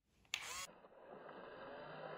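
A short, loud, sharp burst about a third of a second in, then the steady whirr of a toy remote-control excavator's small electric motor and plastic gears driving the boom.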